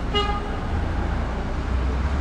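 A short vehicle horn toot just after the start, over the steady low rumble of street traffic.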